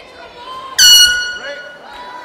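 Cage-side end-of-round horn: one sudden, loud, high steady blast starting just under a second in and fading away by the end, signalling that the round's time has run out.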